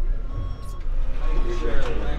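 A vehicle's electronic warning beep, one steady tone sounding twice about a second apart, over the low rumble of a van cabin.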